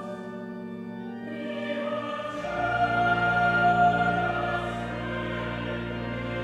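Church choir of boys' and men's voices singing sustained chords. A deep held bass note comes in about two and a half seconds in and the singing swells louder.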